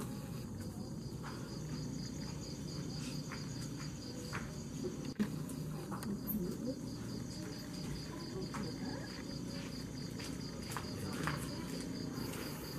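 Crickets chirping at night: a steady high trill pulsing in rapid, even beats over faint low background noise, with one sharp click about five seconds in.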